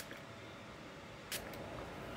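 Facial mist spray bottle pumped twice, each a short hissing puff of fine mist, a little over a second apart.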